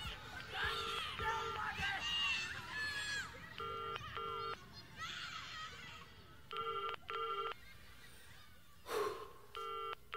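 A recorded telephone ringing in the old British double-ring pattern, four double rings about three seconds apart, with a babble of children's voices fading out in the first few seconds: the outro of a rock recording, just before the next song begins.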